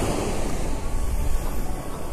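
Wind rumbling on the microphone over the wash of surf, a steady, unpitched noise that swells and dips.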